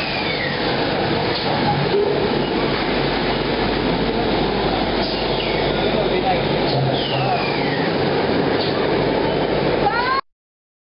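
Automatic bottle bundling and shrink-film wrapping machine running with a steady mechanical noise. A few high squeals slide down in pitch over it.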